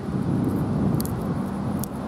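Steady low rumble of vehicle traffic at an airport terminal, with two faint small clicks, one about a second in and one near the end.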